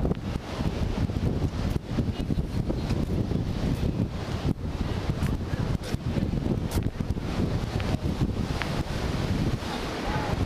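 Wind buffeting the camera's microphone in a loud, fluttering rumble, with ocean surf washing in behind it.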